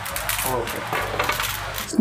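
Light metallic clinking and jingling of costume jewellery pieces being handled, many small quick clicks, with a faint voice underneath.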